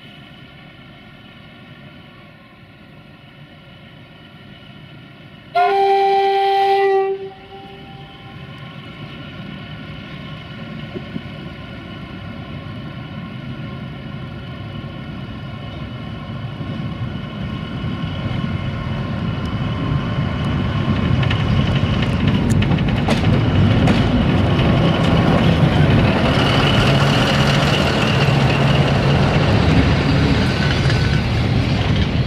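CFR LDH diesel-hydraulic locomotive with a passenger train: its engine hums steadily, and one two-tone horn blast of about a second and a half sounds about six seconds in. The engine and the rumble of wheels on rail then grow steadily louder as the locomotive and coaches pass close by.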